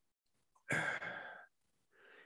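A man's single short, breathy exhale, like a sigh, lasting under a second.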